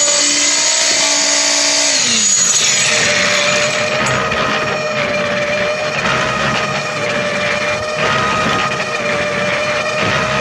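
Electric concrete poker vibrator running in freshly poured concrete, consolidating the pillar to drive out air bubbles. About two seconds in it is switched off, and its whine glides down as the motor winds down.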